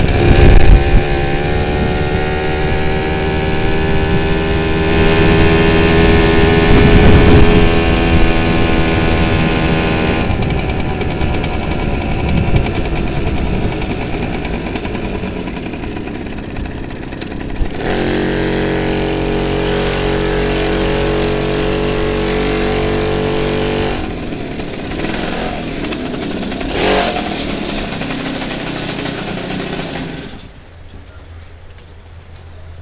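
Garelli moped's small two-stroke engine pulling away with its pitch rising over the first several seconds, then easing off, and later running at a steady pitch for several seconds, with wind rumble on the microphone.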